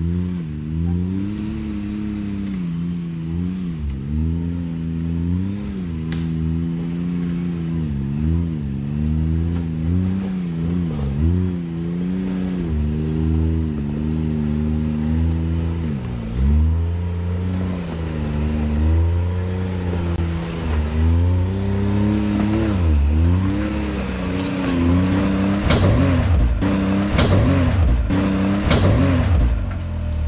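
Can-Am Maverick X3's turbocharged three-cylinder engine revving up and down in repeated throttle bursts as the side-by-side crawls up a washed-out rocky gully. In the last few seconds, as it comes closer and louder, sharp knocks and cracks come from the tyres climbing over loose rock.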